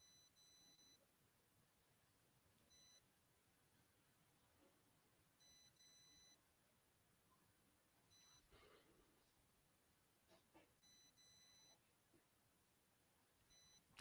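Near silence, with very faint short high-pitched electronic beeps recurring every two to three seconds.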